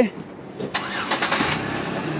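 A car engine starting about two-thirds of a second in, then running on steadily.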